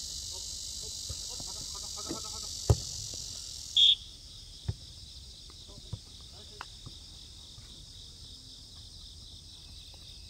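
Steady chirring of a summer insect chorus, which drops a little in level and turns pulsing just before the middle. Over it, a sharp knock a little before three seconds in and fainter knocks later, from footballs being kicked, and a brief high tone just before four seconds in.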